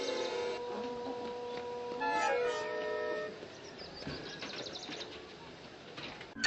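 Background music of held, sustained notes that fade away, with a new chord entering about two seconds in; the second half is quieter.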